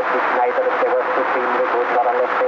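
Indistinct talking that runs on without a break, thin and narrow in tone like an old radio recording.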